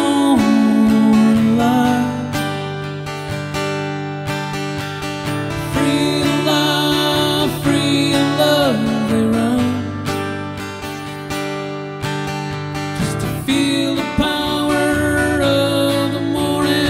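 Strummed acoustic-electric guitar accompanying a man singing long held notes that slide between pitches, heard through a microphone and mixer.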